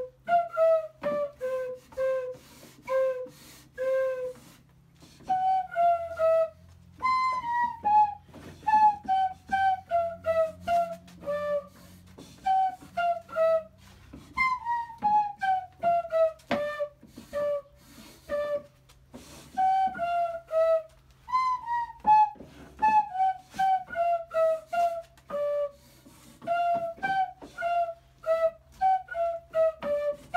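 Drawer-operated pipe organ: drawers pushed in one after another, each forcing air through a cloth flap valve into its own simple open pipe. Together they play a tune of short piped notes, often in falling runs, with sharp wooden knocks from the drawers sliding and shutting.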